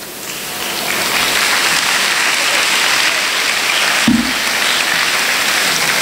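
Audience applauding, building up over the first second and then holding steady, with a brief voice heard through it about four seconds in.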